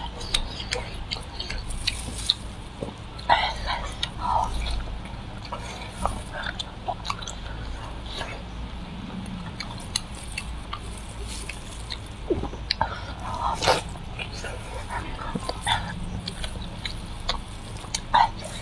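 Close-up chewing of juicy braised pork, with wet lip smacks and scattered short mouth clicks and a couple of louder smacks.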